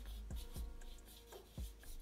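Black marker pen drawing a long stroke down a sheet of paper, its tip scratching faintly, with quiet background music.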